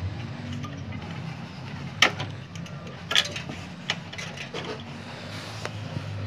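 Small metal tool scraping and clicking against a motherboard's CMOS coin-cell battery holder as the battery is prised out to reset the BIOS: a sharp click about two seconds in and another about a second later, over a low steady hum.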